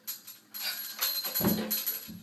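Steel ice-axe picks clinking and jangling against metal rings and carabiners hung from slings, as a climber shifts his weight between them. There is a low thump about one and a half seconds in.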